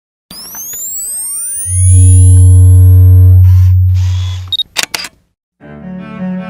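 Logo-intro sound effects: rising whooshing sweeps, then a loud deep bass tone held for about three seconds, then a short beep and a quick camera-shutter click. Music with a low bowed string line starts near the end.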